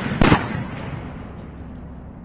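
Two shotgun blasts in quick succession, one right at the start and the second about a quarter second in, the report echoing and dying away over the following second.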